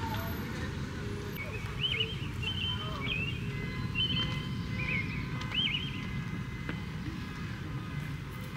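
Outdoor ambience: a steady low rumble, with a handful of short, quick bird chirps between about two and six seconds in.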